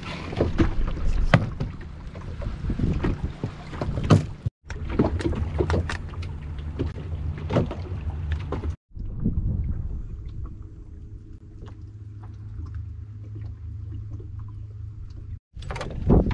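Small boat under way on choppy water: water splashing and slapping at the hull with wind on the microphone, broken by two abrupt cuts. In the last part a steadier low hum with a faint even tone comes from the electric outboard motor driving the boat.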